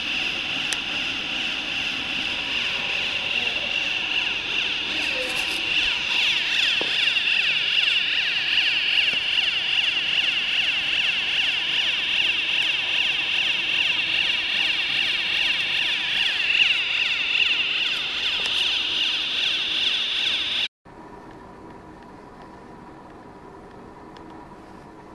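Single-tube fabric reversing machine running, with a loud, steady, high-pitched whine and air rush from its 7.5 hp motor and blower. Near the end the sound cuts off suddenly to a much quieter, steady machine hum.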